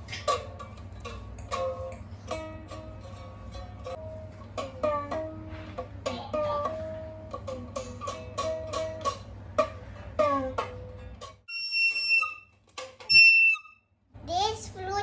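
A toy four-string guitar, ukulele-sized, plucked by a child: a loose run of uneven single notes over a steady low hum. Near the end the playing stops and two short, high whistle-like tones sound, the second one loud.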